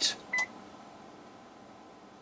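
A single short electronic beep from the bench test setup as the tester is switched in, followed by faint steady hiss.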